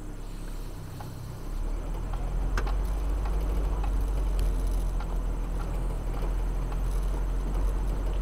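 Vehicle driving on a rough dirt road, heard from inside the cab: a steady low engine and road rumble that grows louder about a second and a half in, with a few scattered knocks.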